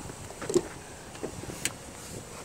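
Front door of a 2018 GMC Terrain being opened by its exterior handle: two short clicks of the handle and latch, about half a second and a second and a half in, over faint outdoor background.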